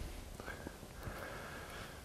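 Quiet room tone with a faint, soft whisper-like sound and a thin faint tone that comes in about a second in.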